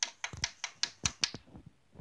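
A quick, irregular run of sharp clicks and taps, several to the second, close to the microphone.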